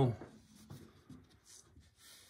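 Faint rubbing and scraping of cotton-gloved fingers on a cardboard LP jacket as it is held upright and handled at its open edge.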